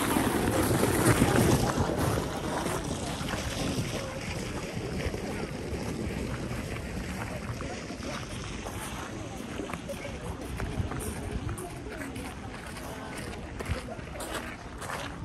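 Crowd of passers-by chatting, with one voice close and clearer in the first two seconds, over a steady low rumble of wind on the microphone.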